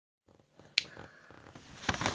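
A single sharp click, then faint low noise and a softer click near the end.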